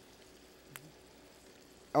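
Mostly quiet kitchen room tone with a faint hiss, broken once by a small sharp snap about a third of the way in, as pole beans are strung and snapped by hand.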